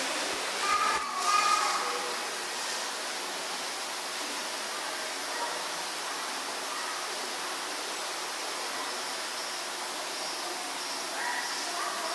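Steady, even background hiss, with a few murmured words in the first second or two and again near the end.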